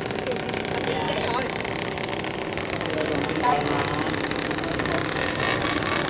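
An engine running steadily at idle, a continuous even hum, with faint voices in the background.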